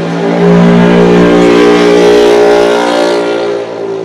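A motor vehicle's engine passing close by, loud and steady in pitch, swelling up about half a second in and fading away near the end.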